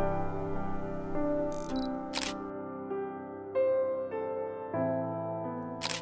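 Soft piano music with a few notes changing every second or so, broken by camera shutter clicks, the clearest about two seconds in and just before the end.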